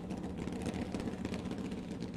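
An injected nitromethane V8 funny car engine idling steadily, a low pulsing rumble.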